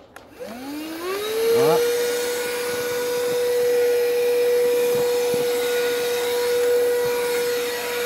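Handheld cordless mattress vacuum cleaner switched on: its motor spins up with a rising whine and settles within about a second and a half into a steady high hum over rushing air. It is sucking up scraps of paper.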